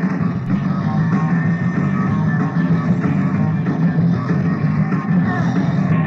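Rock band playing an improvised instrumental live, recorded lo-fi on a mono cassette recorder's built-in microphone: a dense, steady wall of sound with heavy bass and no top end.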